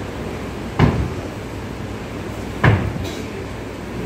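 Two sharp foot stamps on a stage, nearly two seconds apart, over steady room noise.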